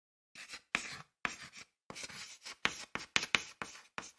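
Chalk writing on a chalkboard: about a dozen short, scratchy strokes in quick succession as a word is written out letter by letter.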